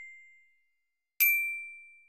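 Glockenspiel from a virtual glockenspiel app, with bright metal-bar notes struck by a mallet. The C that ends the phrase rings and fades away. About a second in, a single D is struck and rings on, starting the D–B♭ pattern again.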